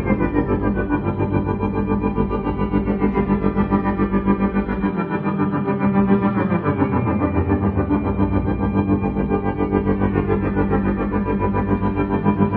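Violin bowed through effects and loop pedals: layered, distorted drones with falling glides on top and a fast, even pulse in the loudness. The lowest bass drops out for a couple of seconds mid-way, then returns.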